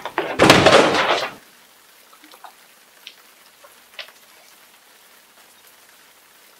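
A loud, noisy crash about half a second in, lasting about a second, as a thrown object hits the door; then a quiet room with a few faint small clicks.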